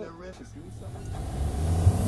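Part of an electroacoustic music piece: a brief fragment of a speaking voice at the start, then a low rumble that swells in loudness through the second half.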